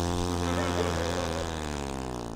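A man's long, low voiced groan as he lets out a held lungful of smoke. It is one steady tone, sinking slightly in pitch and fading toward the end.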